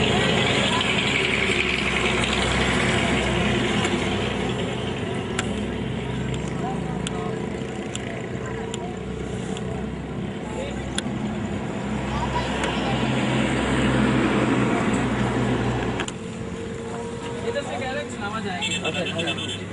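A vehicle engine running steadily under a background murmur of people's voices; the low hum drops away abruptly near the end.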